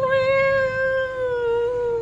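Domestic cat giving one long, drawn-out meow that lasts about two seconds and slides slowly down in pitch.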